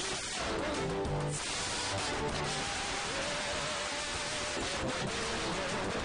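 Live church worship singing: a lead singer on a microphone leads a group of backing singers over a dense, continuous band sound.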